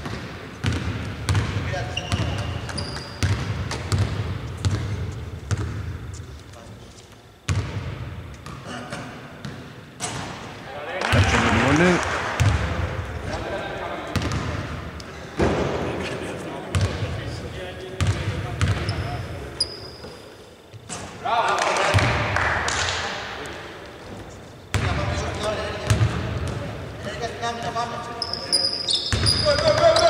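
A basketball bouncing repeatedly on a hardwood court, with players shouting to each other in louder bursts several times.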